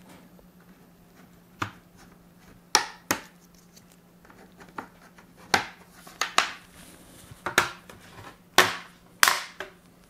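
Plastic clips of an Acer Aspire 5 A515-43 laptop's bottom cover snapping loose one after another as the panel is pried off, about eight sharp clicks at irregular intervals.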